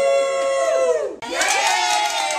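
A group of people shouting and cheering together: one long held shout that falls away about a second in, then another group cheering with several voices over each other.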